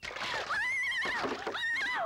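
A woman screams: a high, wavering cry held for about a second, then cried again near the end. It follows a brief splash of water poured from a mug.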